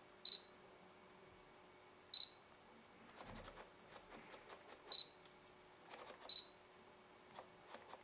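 Canon EOS 500D's autofocus-confirmation beep sounding four times, short and high, with faint clicking between the beeps as the Canon EF-S 17-85mm IS USM lens's focus motor hunts. The camera beeps focus lock although the lens at 24 mm fails to focus. The owner suspects dust in the focus encoder.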